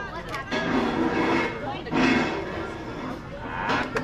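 Voices calling out in two long, drawn-out shouts, each held at a steady pitch for about a second and a half. A short, sharp shout follows near the end.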